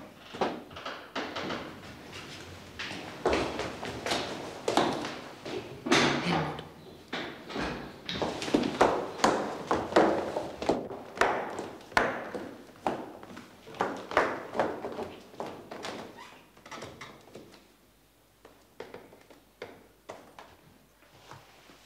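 Hurried footsteps and thuds on the stairs of a stairwell, echoing, dying away near the end.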